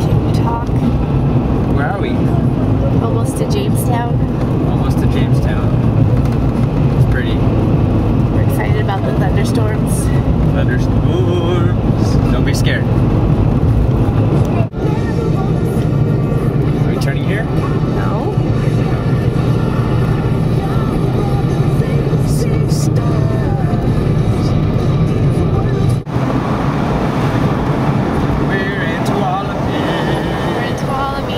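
Steady road and engine rumble inside a Ford Explorer's cabin while driving, with music and indistinct voices mixed in. The sound breaks off abruptly twice, at edits.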